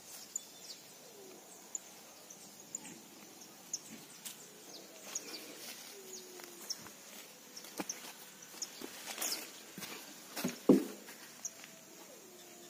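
Soft rustling and scattered small snaps of weeds being pulled by hand from wet soil, with a louder burst of rustling about ten and a half seconds in. Faint bird chirps can be heard now and then.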